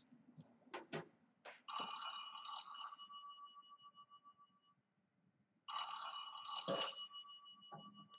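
A telephone ringing twice, each ring a little over a second long and about four seconds apart. A few faint clicks come just before the first ring.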